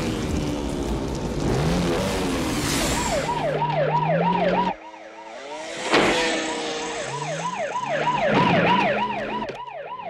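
Police car siren wailing in a fast rise-and-fall yelp, about two cycles a second, over a motorcycle engine revving. The first few seconds hold a noisy rumble before the siren starts. The sound drops out briefly a little before halfway, and a sharp bang comes about six seconds in.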